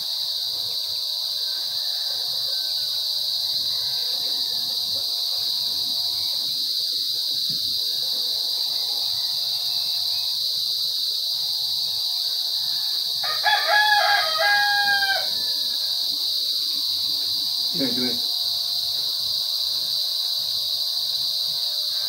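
A steady high-pitched drone of insects throughout, with a rooster crowing once, about two seconds long, a little past halfway through.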